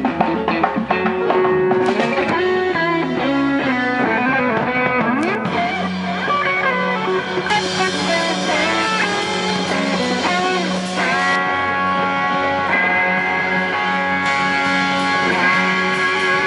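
Live reggae band playing an instrumental passage with electric guitar to the fore over drums, bass and keyboard. A moving melodic line in the first half gives way to long held notes in the second half.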